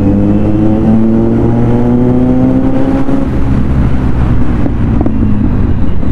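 Kawasaki Z900's inline-four engine pulling in third gear, its pitch rising steadily for about three seconds and then easing off, with wind and road noise on the bike-mounted camera's microphone.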